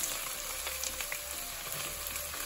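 Sliced onions sizzling and crackling steadily in hot oil in a pot as they are stirred.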